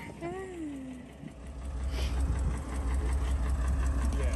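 A mobile crane's engine running at idle: a low, evenly pulsing rumble that swells in about a second and a half in and holds steady.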